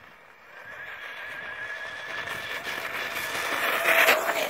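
Traxxas Stampede VXL RC truck's brushless electric motor and drivetrain whining at speed, the high whine wavering in pitch with the throttle. It grows steadily louder as the truck comes toward the microphone and is loudest near the end.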